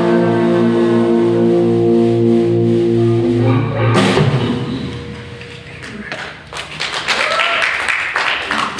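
A live rock band's closing chord, electric guitars and bass held and ringing, cut off sharply about four seconds in. After a brief fade the audience claps, with a few shouts.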